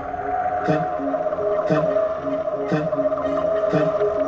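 Background music: sustained synth tones over a slow, soft beat about once a second.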